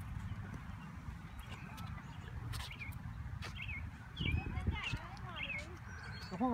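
Short high bird chirps now and then over a steady low rumble, with a louder low bump about four seconds in.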